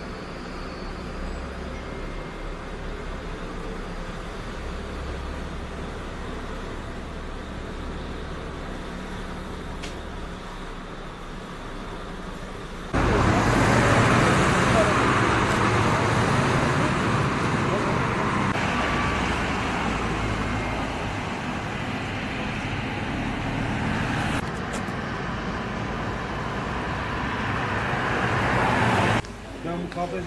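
A low steady hum, then, about thirteen seconds in, much louder road traffic noise that cuts off shortly before the end.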